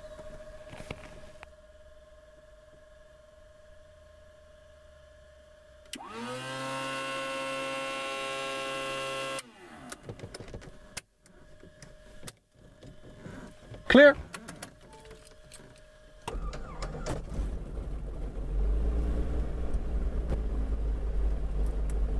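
Electric fuel pump whining for about three seconds to prime a Beechcraft Bonanza's piston engine: it spins up quickly, then holds steady before cutting off. A few seconds later the starter cranks the engine, which catches about two seconds on and settles into a steady run, heard from inside the cockpit.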